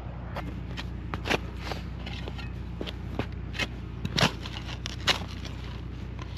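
A spade cutting into grass turf and soil: irregular crunches and scrapes, a few strokes a second apart.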